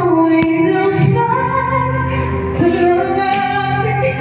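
A woman singing karaoke into a microphone over an instrumental backing track, holding long sustained notes.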